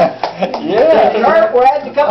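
Men's voices talking and laughing together, with drawn-out exclamations.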